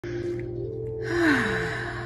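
Soft background music of steady, sustained tones. About a second in, a woman breathes out audibly in a sigh, her voice sliding down in pitch.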